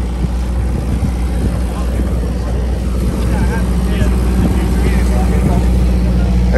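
A steady, loud low engine hum, like a generator or idling truck engine, with faint crowd chatter over it.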